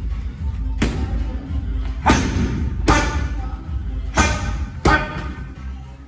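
Strikes landing on Muay Thai pads held by a trainer: five sharp smacks in quick succession, roughly a second apart, each with a short ring of room echo. Background music plays under them.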